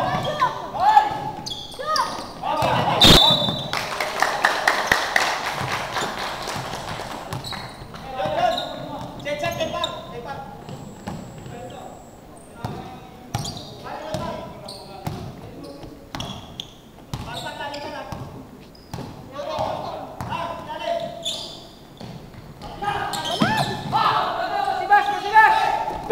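Basketball dribbled on a hardwood gym floor in play, with repeated sharp bounces echoing in a large hall under players' shouting voices. A loud knock and a burst of several voices come about three seconds in.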